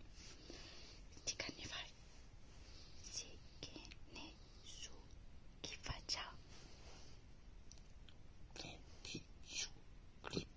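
Quiet whispering: short breathy, hissing syllables come and go, with pauses between them.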